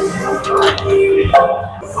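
Iron weight plate slid onto a Smith machine bar sleeve, with a metal clank about a second and a half in, over background music with a held note.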